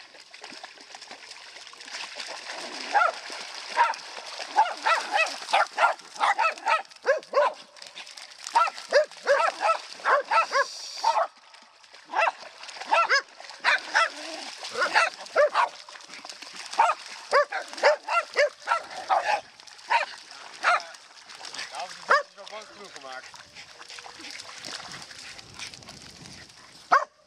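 Spitz-type dog barking over and over in quick runs of short barks, with a brief pause about halfway, for roughly twenty seconds.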